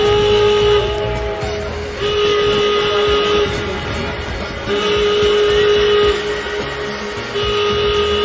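Washington Nationals home run horn, a whistle-like stadium horn sounding long blasts of one pitch, repeated about every two and a half seconds over music. One blast is ending at the start, and three more follow.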